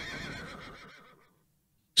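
The tail of a voice fading away over about a second, then dead silence until speech cuts back in abruptly.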